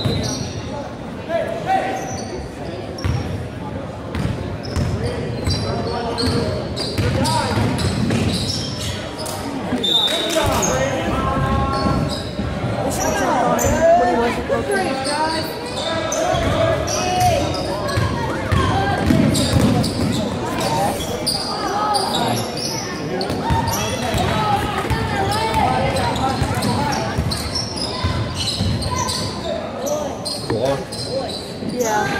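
A basketball bouncing on a hardwood gym floor, with sneakers squeaking. Indistinct shouts and talk from players and spectators echo in the gym, busiest in the middle stretch.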